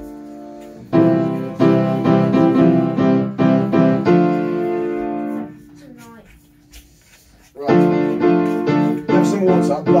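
Upright piano played by a child, trying out chords for a song: a run of struck chords about a second in, the last one held, a pause of about two seconds, then another quick run of chords near the end.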